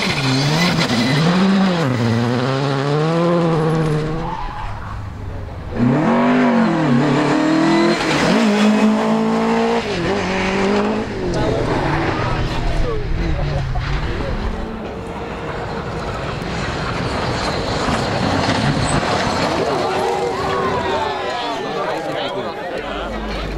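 Rally cars driven flat out on a loose dirt stage, passing one after another in short clips. Their engines rev up and drop back through gear changes, and the tyres slide in the dirt. There are abrupt cuts between cars, one a few seconds in.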